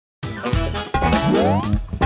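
Playful intro jingle for an animated logo: music that starts a moment in, with a springy upward-sliding 'boing' tone about a second in.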